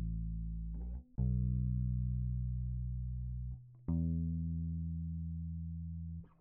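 Recorded bass guitar notes played back, each held and slowly dying away, with a new note starting about a second in and another just before four seconds in. The edits between the quantized clips pass without a click, now smoothed by short crossfades.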